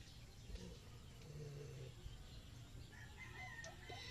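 A rooster crowing faintly near the end, over low steady background noise.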